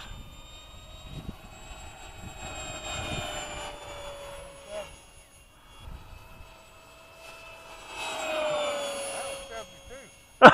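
Whine of the 70 mm electric ducted fan on a modified Dynam Hawk Sky RC plane flying past at speed, swelling twice, about three seconds in and again near the end, its pitch sliding slightly down as the plane goes by.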